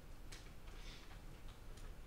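Quiet room tone with a faint low hum and a few faint, brief clicks.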